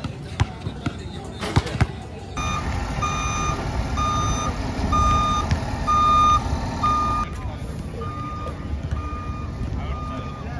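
A few basketball bounces on an outdoor court, then a bus's reversing alarm beeping in a steady string, a little under two beeps a second, over the low running of its diesel engine.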